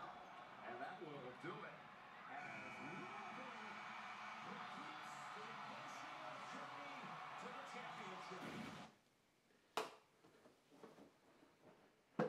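Faint television broadcast of a basketball game: commentators talking over arena crowd noise, cutting off suddenly about nine seconds in, followed by a single sharp click.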